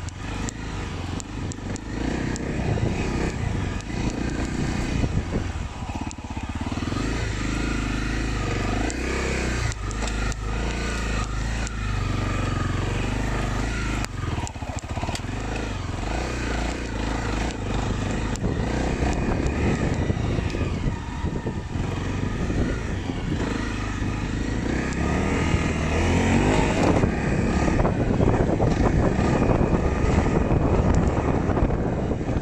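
Dirt bike engine running at low speed on a rough trail, with frequent short knocks and rattles over the bumps. It gets louder in the last few seconds.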